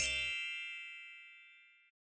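A bright, bell-like chime sound effect rings once at the start and fades away over about a second and a half, as the last of the background music cuts off.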